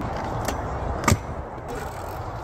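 Stunt scooter running along a concrete skatepark ledge: a steady scraping rattle of wheels and deck on concrete, with a sharp clack a little over a second in.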